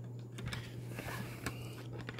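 Faint plastic clicks and handling as the snap-on plastic safety grille is fitted back onto a small switched-off USB desk fan.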